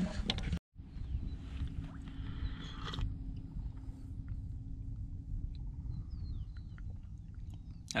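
Wind rumbling on the microphone, with a soft rush of noise in the first three seconds and a few faint, high, falling bird chirps near the end.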